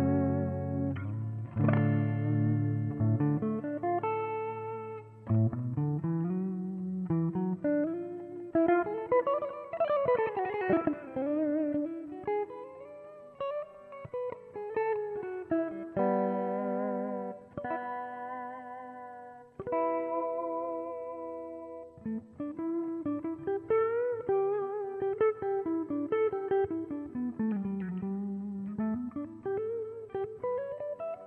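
Ibanez Jem Jr. electric guitar on its neck pickup, played clean through a Marshall JCM 800: a melodic passage of chords and single-note lines with notes that slide smoothly up and down in pitch.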